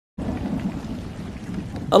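Heavy rain with a low rumble that starts suddenly and fades away over the two seconds.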